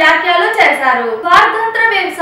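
A woman speaking: continuous narration with no other sound.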